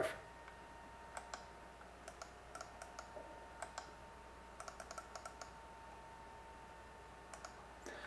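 Faint, irregular clicks in small clusters over a low steady hum and a faint steady whine.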